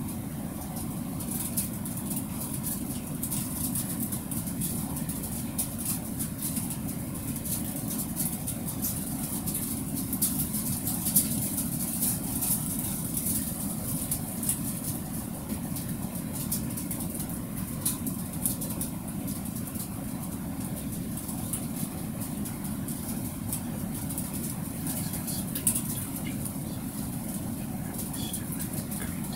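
Steady low background rumble with a constant high hiss and scattered faint ticks, with two brief louder clicks, one midway and one near the end.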